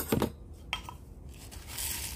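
Light clicks and clinks of a small metal spoon being handled and set down beside a pot of gravel-topped succulents, a few sharp ticks at the start and one more a moment later, followed by a soft hiss near the end.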